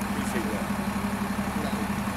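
Steady low hum of an idling vehicle engine beneath street noise, with faint voices in the background.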